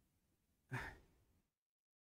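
Near silence, broken by one short, soft breath out from a man at the microphone a little under a second in.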